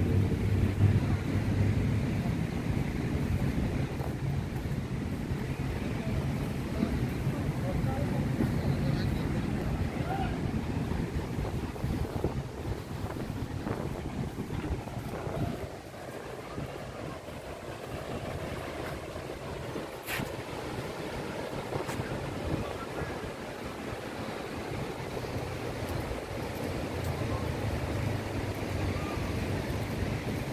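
Beach ambience: small waves washing on the shore and wind buffeting the microphone, with faint voices of people around. A low engine hum runs through the first third and returns near the end.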